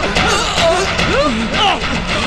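Fight-scene soundtrack: background music under men's shouts and grunts, with several sharp hits and scuffling as bodies grapple and fall to the floor.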